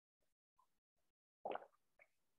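Near silence, broken by one brief faint sound about one and a half seconds in.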